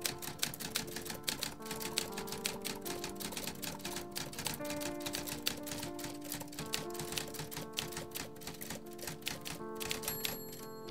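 Portable manual typewriter being typed on quickly: a fast, irregular run of key strikes clacking. Underneath, slow music of held notes that change about once a second.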